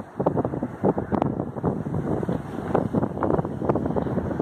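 Wind buffeting the microphone in uneven gusts, a rumbling noise with many irregular thumps.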